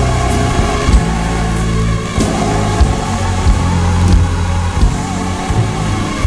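Gospel church music with long held low bass chords and a few sharp, bright percussion hits.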